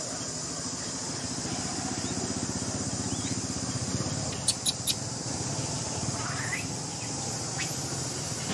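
A steady, high-pitched drone of insects, with a low rumble underneath. About halfway through come three sharp clicks in quick succession.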